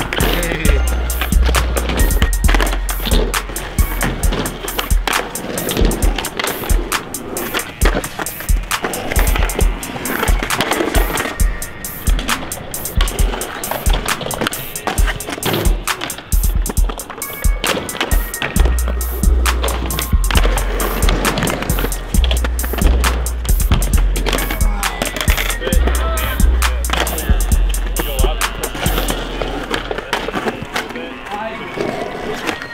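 Skateboard wheels rolling on concrete, with sharp snaps of tails popping and boards landing and clattering during flip tricks. A beat with deep bass plays over it.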